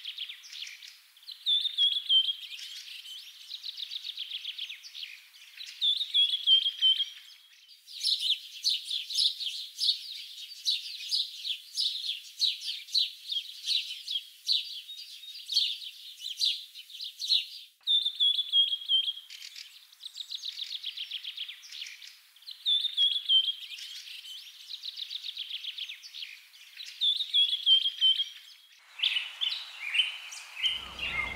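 Small birds chirping: short phrases that slide down in pitch come again and again between fast, even trills, and a busier run of chirps fills the middle stretch.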